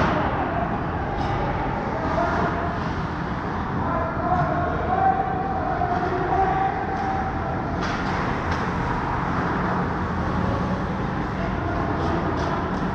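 Hockey rink ambience during play: a steady rumble of the arena with distant skating and stick noise, broken by sharp knocks at the start and about eight seconds in.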